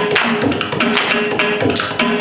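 Mridangam playing quick rhythmic strokes under a Carnatic violin melody in raga Vasantha, over a steady drone.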